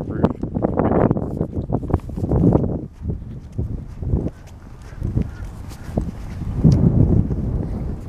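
Footsteps on an asphalt road with wind buffeting the microphone. The sound is loudest in the first few seconds and again near the end.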